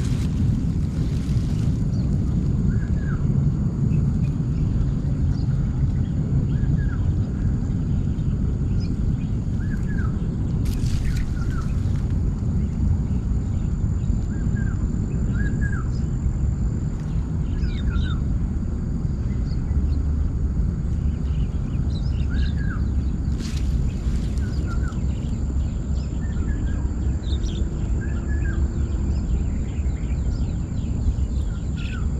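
Outdoor waterside ambience: a steady low rumble with small birds chirping briefly every couple of seconds, and a thin steady high whine over it. A few short rustles or knocks come near the start, about a third of the way in, and a little past the middle.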